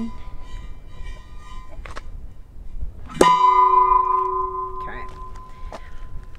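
Metal barrel of a bowling ball cannon ringing like a bell as the bowling ball is loaded. A ring is fading out at the start, and a sharp clang about three seconds in rings on, slowly fading.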